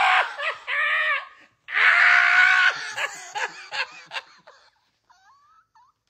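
A woman shrieking with laughter: two long, loud cries, then shorter bursts of laughter that die away.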